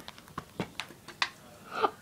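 A small rubber bouncy ball tapping and clicking as it rolls and bounces along a homemade track over plastic game cases: a string of light, irregular knocks.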